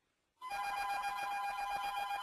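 An electronic, telephone-like ringing tone: one steady warbling ring lasting about two seconds, starting just under half a second in.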